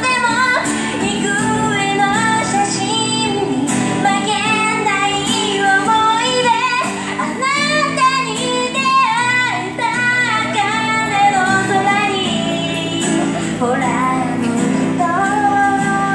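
Female pop duo singing a song into microphones through a small street amplifier, with acoustic guitar accompaniment.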